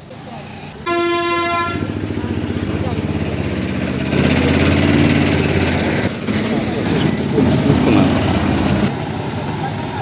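A vehicle horn toots once, briefly, about a second in, followed by an engine running close by, its rhythmic low note swelling loudest around the middle and again near the end, with voices in the background.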